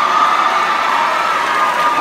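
Audience applauding and cheering, steady throughout.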